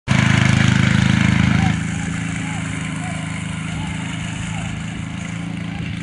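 Go-kart's small engine running steadily as the kart drives off across the grass, louder for the first second and a half and then quieter as it pulls away.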